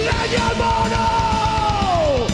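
Heavy metal band playing live, the lead singer holding one long high yell that swoops up at the start and drops away near the end, over busy drumming and guitars.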